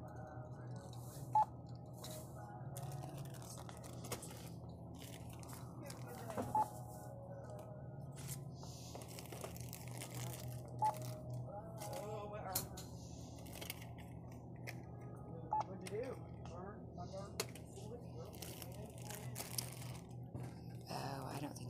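Self-checkout barcode scanner beeping as items are scanned: four short single-tone beeps a few seconds apart, over a steady low store hum, with rustling of packaging.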